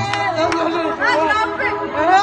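A crowd of people chattering, many voices talking over one another.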